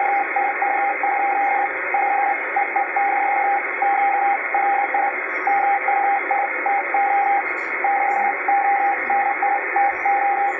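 Morse code (CW) from an amateur radio transceiver's speaker: a single steady beep keyed on and off in dots and dashes at a brisk, even pace. Constant receiver hiss runs underneath.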